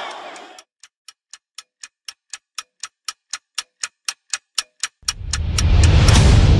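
Clock-like ticking sound effect, about four ticks a second, growing steadily louder, then overtaken about five seconds in by a deep rumble that swells up as dramatic music begins. Crowd shouting fades out in the first half second.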